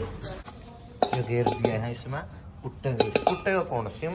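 Steel utensils clinking and clattering as they are handled, with a few sharp metallic knocks that ring briefly.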